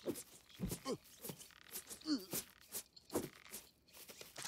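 Short wordless vocal sounds, grunts and strained cries, several in quick succession with sliding pitch.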